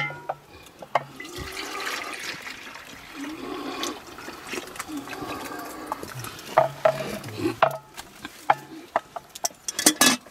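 Liquid being poured from a metal vessel into pots, followed by a series of knocks and clanks as metal and clay pots are handled and set down.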